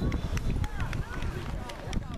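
Indistinct background voices of children and adults, no clear words, over a low rumble of wind on the microphone, with a few faint clicks.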